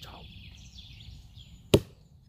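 A single sharp chop about three-quarters of the way through: an axe striking the wooden log.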